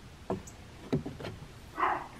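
Thick-wall aluminum curtain rod being snapped into a drilled wooden snap-fit block: a few faint clicks, then a brief, louder rub near the end.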